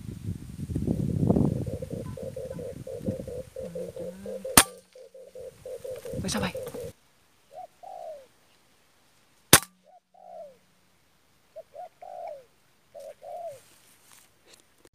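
Two sharp PCP air rifle shots about five seconds apart, one about four and a half seconds in and one about nine and a half seconds in. Doves call around them, with a rapid pulsed call before the second shot and short cooing calls after it. A low rumbling noise fills the first few seconds.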